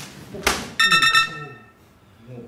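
A sharp clack about half a second in, then a bright, bell-like sound effect ringing in a quick run of three strokes and fading out.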